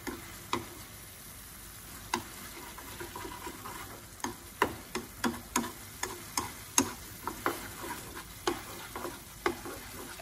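Wooden chopsticks stirring and tossing saucy noodles in a metal wok, knocking and scraping against the pan in irregular clicks that come about three a second in the second half. Under the clicks, the black bean sauce sizzles faintly in the hot wok.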